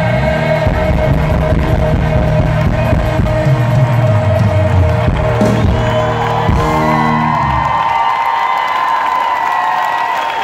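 Live pop band playing the end of a song with bass and drums. The bass and drums stop about eight seconds in, leaving one held high note ringing out, while the audience whoops and cheers.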